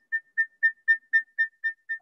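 Audio feedback looping between a phone and a laptop joined to the same video call in one room: a high whistling tone pulsing evenly about four times a second.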